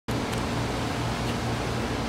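Steady low hum with an even hiss: ventilation equipment running in the room.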